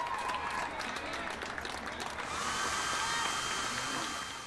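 Applause for about the first two seconds, giving way to a handheld hair dryer running with a steady whine and hiss.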